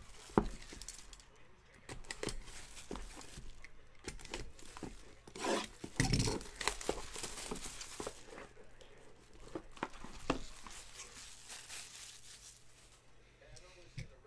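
Clear plastic shrink-wrap being torn and crinkled off trading-card boxes, with the cardboard boxes being handled and opened; scattered crackles and taps, loudest about six seconds in.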